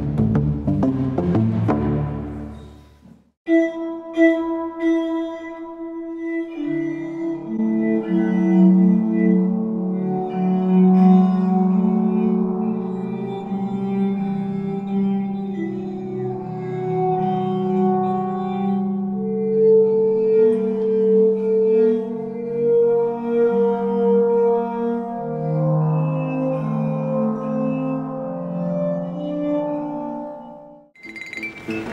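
A large glass-tube instrument plays fast repeated notes and cuts off about three seconds in. A Cristal Baschet then sounds: its glass rods are stroked with wet fingers, a few short notes first, then held ringing tones that overlap into slowly shifting chords.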